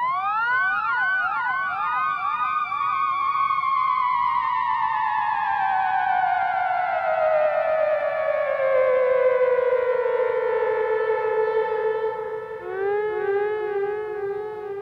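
Big Briar theremin played through a delay. Quick upward swoops at the start repeat and overlap as echoes, then the note makes one long slow glide down in pitch. Near the end it settles into a low wavering vibrato.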